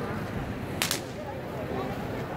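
Two sharp cracks in quick succession, a fraction of a second apart, over steady street crowd noise.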